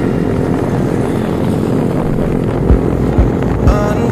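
Several motorcycle engines running in a steady drone as a group rides past. Regular deep thumps of a music beat, about two a second, come in about two-thirds of the way through.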